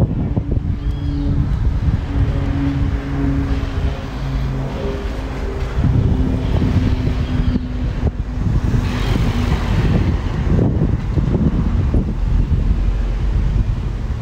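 Street ambience: a motor vehicle's engine running nearby gives a steady hum that fades out about ten seconds in, over a heavy low rumble of wind on the microphone.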